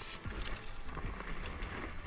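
Fishing reel cranked quickly to bring in a hooked fish, its gears ticking faintly, over a low wind rumble on the microphone.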